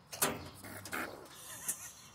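A buck rabbit falling off a doe after mating: a sudden clatter on the wire cage floor about a quarter second in, followed by scuffling as the rabbits move on the mesh.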